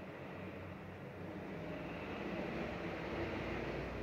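Steady background rumble and hiss with no distinct events, swelling slightly in the second half.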